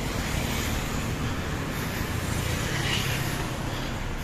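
Steady road and engine noise from a vehicle driving at a slow, even pace, with a low engine hum under it.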